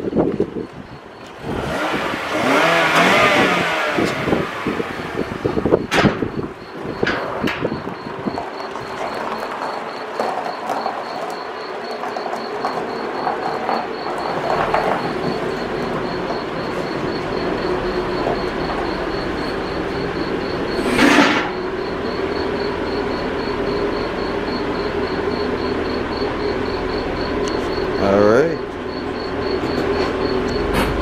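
The 2.5-litre four-cylinder engine of a 2014 Scion tC running at low revs as the car creeps forward. There is a steady hum, with two brief louder noises about 21 and 28 seconds in.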